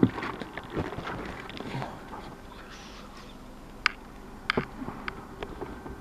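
Scattered knocks, clicks and rustling as someone climbs into a small hatchback's driver's seat, with handling noise on the microphone; the sharpest knocks come near the start and again around four to five seconds in.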